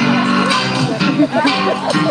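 Music playing loudly, with held notes throughout and the voices of a crowd beneath.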